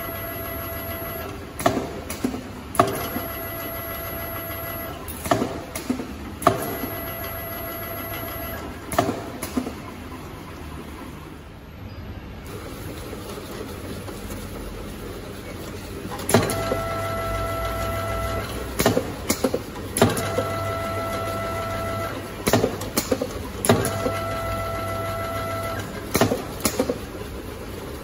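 Auger powder filler's drive motor whining in runs of about two seconds as it doses each jar, repeating every three to four seconds, with sharp clicks and knocks between fills as jars are stopped and moved along the conveyor. The cycle pauses for several seconds midway, then resumes.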